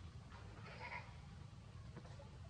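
A macaque giving one short call, lasting under a second and starting about half a second in, over a faint steady low rumble.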